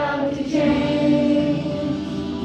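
A group of children singing a Christmas song together into microphones, holding one long note for about a second.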